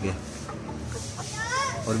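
Young Aseel chickens clucking: a quick run of about five short calls, each rising then falling in pitch, about a second and a half in.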